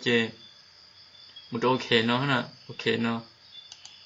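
A person's voice speaking in short phrases over a faint steady high hiss, with a couple of faint computer-mouse clicks near the end.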